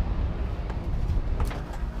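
Steady low rumble of outdoor ambience on an airfield ramp, with a couple of faint clicks about one and a half seconds in.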